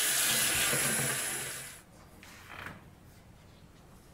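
Tap water running hard into a sink, a steady rush with a thin high whistle, shut off a little under two seconds in.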